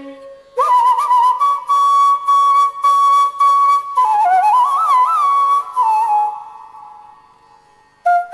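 Carnatic bamboo flute playing solo: a new phrase enters about half a second in, holds a high note steadily, then winds through wavering, sliding ornaments down to a lower note that fades out near the end.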